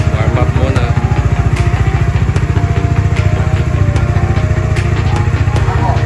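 Single-cylinder engine of a Dominar 400UG motorcycle idling with a steady, even pulse, under background music with a melody.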